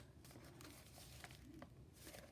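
Near silence, with faint rustling and a few light ticks of paper pages and cards being turned by hand in a paper-stuffed junk journal.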